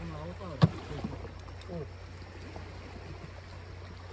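Low voices in the first two seconds and a single sharp click a little over half a second in, over steady low wind and water noise.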